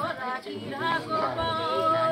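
A woman singing unaccompanied in the drawn-out Nepali thado bhaka folk style, the melody sliding through a few short turns and then settling on a long held note.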